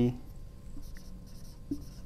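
Dry-erase marker writing on a whiteboard: a run of short, faint, high strokes as the word is written out.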